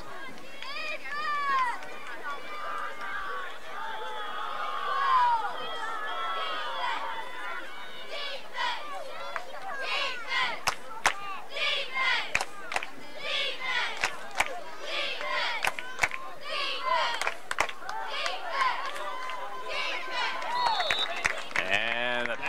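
Football stadium crowd, many voices calling and shouting over one another between plays. From the middle on, sharp knocks and claps come in irregularly on top of the voices.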